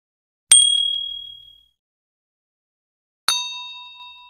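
Two bell-like ding sound effects, struck about half a second in and again about three seconds later. Each rings on and fades over about a second, the second with a fuller, lower ring. This is the kind of effect laid over a tap on a YouTube subscribe button.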